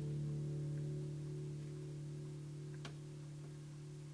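The last chord of a song on a nylon-string classical guitar, ringing out and slowly fading. There is a faint click about three seconds in.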